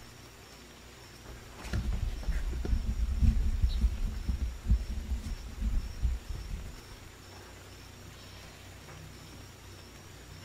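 Irregular low thumps and rumble of handling noise on a microphone, starting a couple of seconds in and lasting about five seconds, over a faint steady hiss.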